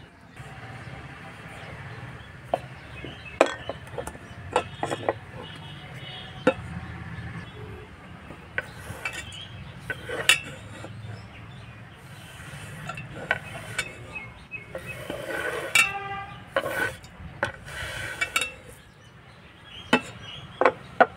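Hands-on food preparation with a stainless steel bowl and a wooden chopping board: scattered sharp knocks, taps and clinks as the mixture is worked in the bowl and chopped nuts are handled on the board. About three quarters of the way through, one clink rings on with a clear metallic tone.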